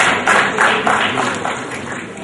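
Audience applauding, loud at first and fading away.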